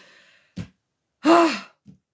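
A woman lets out a short, loud, breathy voiced sigh a little past the middle, its pitch rising and then falling, after a faint breath at the start.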